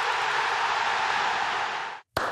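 A steady rushing hiss, the whoosh effect of a TV segment graphic, cut off suddenly at the end.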